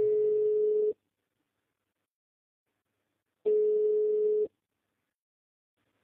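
Telephone ringback tone: two one-second rings of a single steady pitch, about three and a half seconds apart, while a call waits to be answered.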